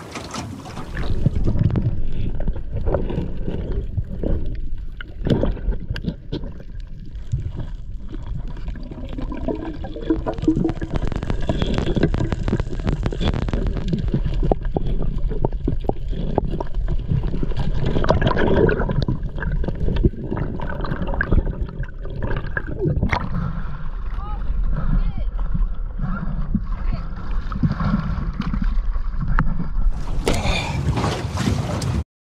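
Muffled underwater sound picked up by a camera in a waterproof housing: a low, steady rumble of moving water with a few sharp clicks and knocks.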